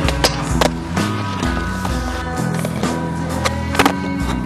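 Skateboard wheels rolling on concrete with a few sharp clacks of the board hitting the ground, the loudest pair near the end, over background music with a steady beat.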